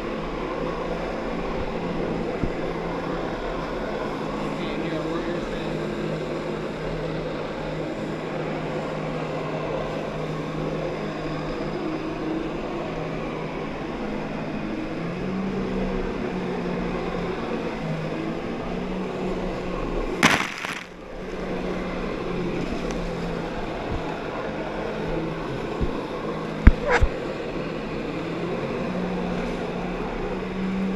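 Jet ski engine running under steady load to drive a flyboard through its hose, with water rushing in the wake; its hum steps up in pitch about fifteen seconds in. A brief loud rush of noise comes about twenty seconds in, and a couple of sharp knocks near the end.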